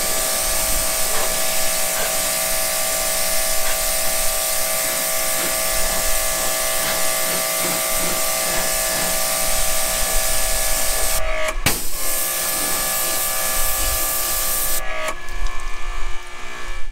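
Pressure washer spraying a jet of water at a truck's mud flap and its hardware: a steady hiss with the pump's whine. The spray stops for a moment about eleven seconds in, starts again, and stops about a second before the end.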